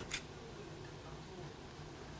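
One short click just after the start, then faint steady room tone.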